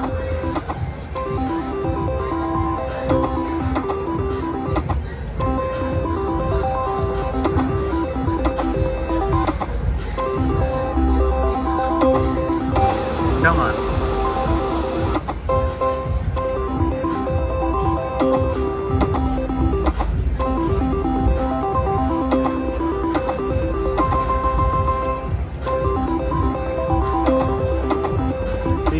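IGT Pinball reel slot machine playing its electronic spin tones, a short chiming tone sequence repeating with each spin of the reels about every two and a half seconds, over a steady casino hubbub of voices.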